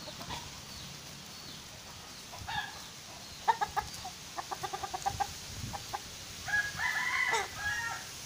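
Chickens clucking: a few single clucks, then a quick run of clucks around the middle, and a longer, higher call near the end.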